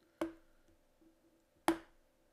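Two sharp clicks about a second and a half apart, typical of a computer mouse button being pressed and released while scrolling a page.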